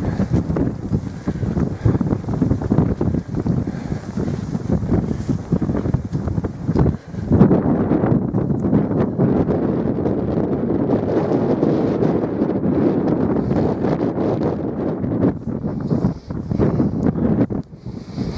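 Strong wind buffeting the camera microphone: a loud, steady low rumble with a brief lull about seven seconds in.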